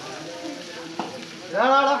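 Steady hiss of water spraying from a garden hose onto an elephant's hide. A single click about a second in, then a loud voice cuts in near the end.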